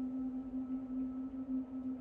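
Background music drone: one steady low tone held throughout, with a fainter higher tone above it.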